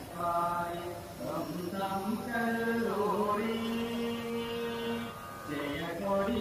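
Slow singing with long held notes: the song that goes with the hoisting of the school flag.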